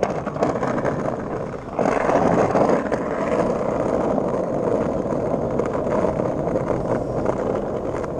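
Skateboard wheels rolling over stone pavers: a steady rumbling noise that grows louder about two seconds in.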